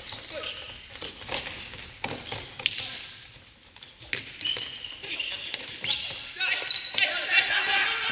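Futsal being played on a wooden gym floor: scattered sharp thuds of the ball being kicked and bouncing, short high sneaker squeaks, and players' shouts, busier in the last few seconds.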